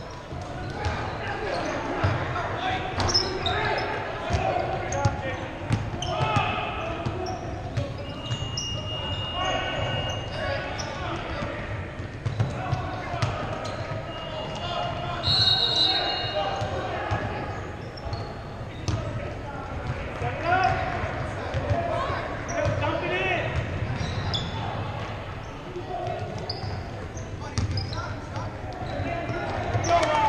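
Basketball game in a large echoing gym: a ball bouncing on the hardwood court among a steady mix of shouting and talking from players and spectators.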